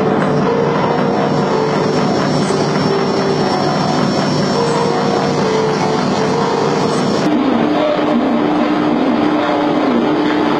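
Live experimental electronic noise music: a loud, dense wash of noise with several held tones layered over it, including a thin high whine. About seven seconds in, the sound changes abruptly: the high end cuts out and a lower wavering tone takes over.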